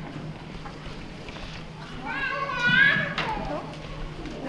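Indistinct children's voices in a large hall, with one high child's voice calling out loudly about two seconds in.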